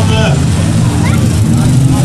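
Autocross car engines running steadily on the track, under a public-address announcer's voice.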